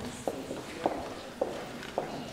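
Footsteps walking at an even pace, a little under two steps a second, each step a short sharp knock.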